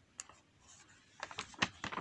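Faint light clicks and taps: one click shortly after the start, then a quick run of several clicks in the second half.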